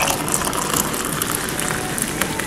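Hot water poured from an electric kettle into a ceramic mug: a steady splashing hiss of the stream filling the mug.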